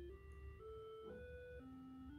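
AY-3-8910 programmable sound generator playing a single faint electronic test tone on channel A through powered speakers, jumping to a new pitch about every half second. It steps up three times, then drops to a lower note about three-quarters of the way through.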